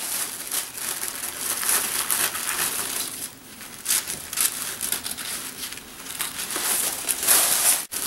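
Pink tissue paper crinkling and rustling as it is handled and trimmed with scissors, a busy crackling rustle that eases briefly in the middle.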